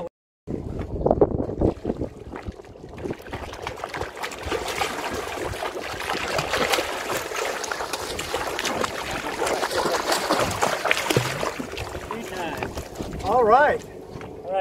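Water splashing as a hooked cobia thrashes at the surface beside the boat and is scooped up in a landing net, with wind on the microphone; a voice shouts near the end.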